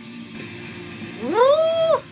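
A drawn-out, meow-like cry close to the microphone, much louder than the music. It rises quickly about a second in, holds one pitch, and drops away near the end. Under it, rock music with guitar plays quietly.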